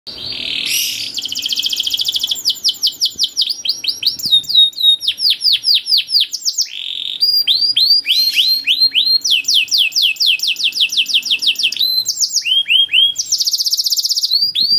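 Domestic canary singing a long, continuous song: high-pitched trills, each a quick run of the same repeated note, switching to a new trill type every second or so, with 'cuit cuit' sweeps among them.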